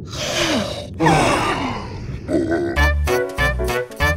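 Cartoon characters' wordless grunts and groans over noisy sound effects. About three seconds in, upbeat theme music with a heavy bass beat starts.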